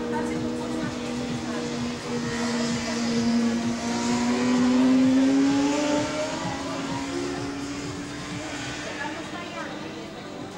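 Racing motorcycles running at high revs on a circuit, their engines a steady whine; one comes past close about halfway through, its note climbing and loudest as it goes by, then fading.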